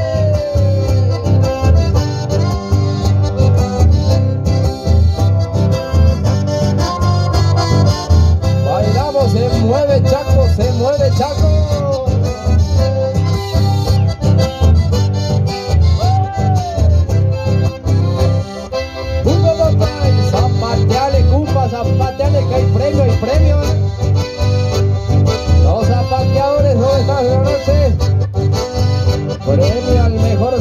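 An accordion and an acoustic guitar playing live through a PA in an instrumental passage. The accordion carries the melody over a strong, steady bass.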